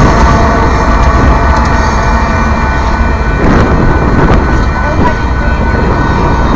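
Loud, steady low rumble of a Union Pacific coal train moving away from the crossing just after its last car has cleared.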